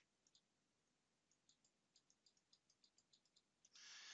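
Near silence, with a string of faint computer-mouse clicks in the second half and a soft breath near the end.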